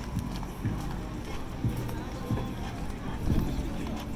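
Footsteps on wooden pier planks at a walking pace, about one and a half steps a second, each a dull knock, over background chatter and music.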